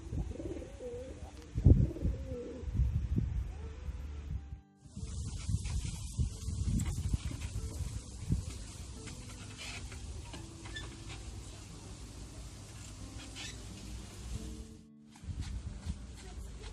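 Background music with a pigeon cooing during the first four seconds or so. After a sudden cut, a steady outdoor hiss with scattered clicks takes over.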